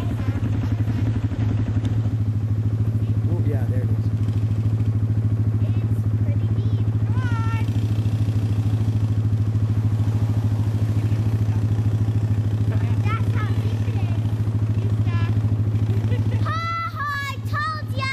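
ATV engine running with a steady low drone while a quad drives into a deep mud puddle; the drone drops away about a second and a half before the end. Voices call out briefly about halfway through and near the end.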